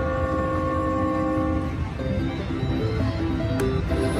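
Slot machine game sounds: a held electronic chord for about two seconds, then a quick run of short electronic notes stepping up and down as the reels land, with a sharp click near the end. A low casino-floor rumble runs underneath.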